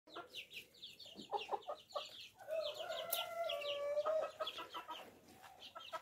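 A flock of half-grown chicks cheeping with rapid, high chirps and lower clucks. Around the middle one bird gives a longer drawn-out call.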